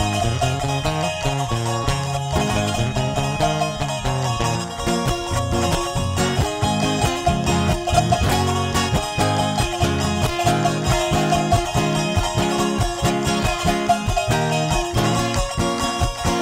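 Live Andean folk band playing an instrumental break without vocals: guitar and charango strumming over a bass line with a steady beat.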